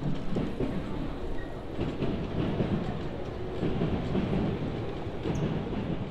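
A train passing, a continuous low rumble of rail traffic.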